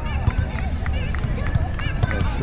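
Indistinct voices of people on and around the beach volleyball courts talking and calling out, over a steady low rumble.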